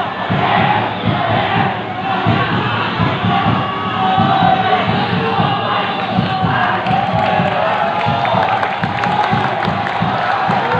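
Football supporters in the stands chanting and singing together, many voices holding loud, sustained sung lines.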